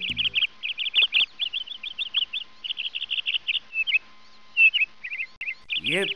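Birds chirping: a fast, dense run of short, high chirps that thins out briefly about four seconds in.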